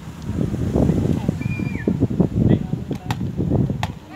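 Outdoor ambience at a football pitch: a low, uneven rumble with a few sharp knocks in the second half and one brief high tone partway through.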